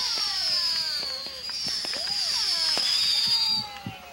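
Consumer fireworks going off: a shrill whistle slowly falling in pitch, other whistles gliding downward, and scattered sharp pops. The whistling dies away shortly before the end.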